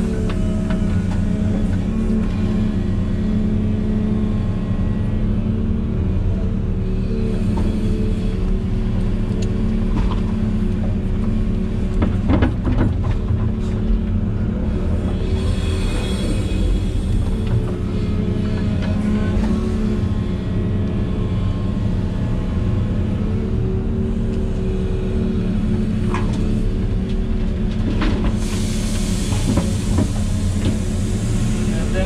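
Volvo EC380E excavator's diesel engine running under load, heard inside the operator's cab, with its note swelling as the hydraulics work the boom and bucket. A few knocks come about twelve seconds in, and a hiss rises near the end as soil pours from the bucket into a truck.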